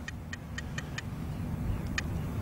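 Geiger counter clicking about four times a second through the first second, then once more near the end, over a low background rumble. The rapid clicking is the counter's reading in depleted-uranium dust, about four times the count on arrival.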